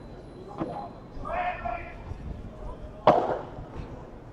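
Padel rally: sharp hits of the ball, a lighter one about half a second in and a louder one about three seconds in, with a brief voice in between.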